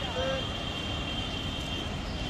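Outdoor street ambience: a steady rumble of traffic under a constant high-pitched whine, with a brief snatch of a voice just after the start.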